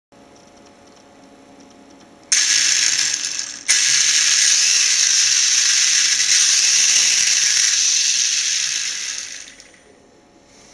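Feigao 540 brushless motor in a 1:8 Thunder Tiger conversion driving its pinion and spur gear, with a loud rapid ratcheting clatter. The clatter starts suddenly about two seconds in, breaks off briefly, then runs again for about six seconds before fading out. This is the sign of the drivetrain fault the owner blames on a slipping pinion set screw.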